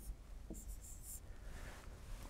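Faint scratching of a stylus writing on an interactive whiteboard screen, lasting about a second.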